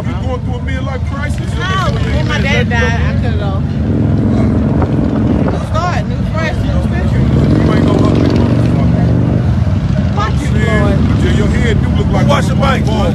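A motorcycle engine running, with its pitch rising about seven seconds in, under people talking.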